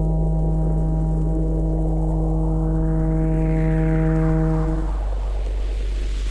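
Ambient electronic music: a held synthesizer chord over a steady low bass drone, with a hissing sweep that rises in pitch and falls away. The chord stops about five seconds in, leaving a swirl of noise.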